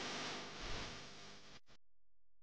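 Faint, steady background hiss like room tone, fading a little and then cutting off abruptly to silence near the end.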